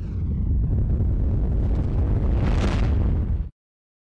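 Logo-animation sound effect: a falling swoosh, then a loud, low, explosion-like rumble that swells brighter near the end and cuts off suddenly about three and a half seconds in.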